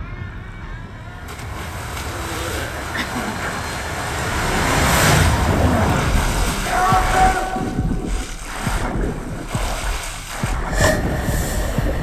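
Horror film trailer soundtrack played back over speakers: a swelling rush of sound effects and score that builds to its loudest about five seconds in, with a brief held tone a couple of seconds later.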